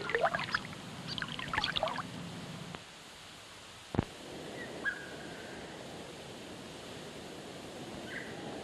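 Water splashing and dribbling in a shallow swamp, with the irregular sloshing of a crocodile moving through the water, for the first two to three seconds. Then a single sharp knock about four seconds in and a short, faint bird chirp over quiet outdoor hiss.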